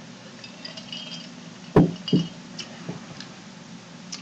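Ice clinking faintly in a glass jar mug of cocktail, then the mug set down on a wooden bar top with two quick knocks about two seconds in and a lighter tap soon after.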